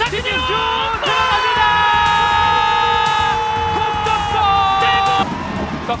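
A football commentator's long, drawn-out goal shout, held for about four seconds and falling slightly in pitch, over background music.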